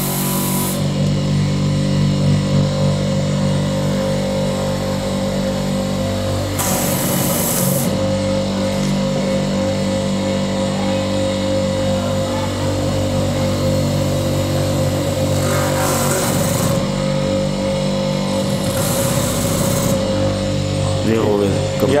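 Small electric motor of a slipper-making bench machine running with a steady hum, while a rubber slipper sole is pressed onto the spinning bit in its spindle to bore holes for the straps. Three brief higher-pitched grinding bursts come about seven, sixteen and nineteen seconds in, as the bit cuts into the sole.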